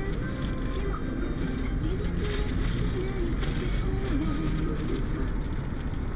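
A car's engine idling in stopped traffic, heard inside the cabin as a low, steady rumble. Faint audio from the cabin plays underneath, with a wavering pitch.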